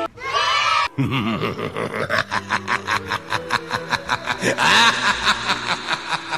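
A woman laughing: a short high squeal, then a long run of quick repeated laughs, about four or five a second, louder near the end.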